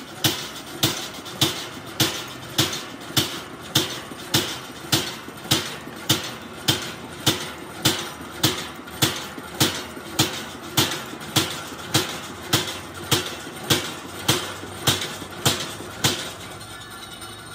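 Flywheel-driven mechanical punch press punching holes in a steel sheet: sharp metallic strikes in a steady rhythm, a little under two strokes a second.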